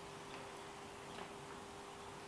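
A few faint ticks of a small hand tool against the knobby rear tyre of a Honda Dominator as its tread depth is checked, over a faint steady hum.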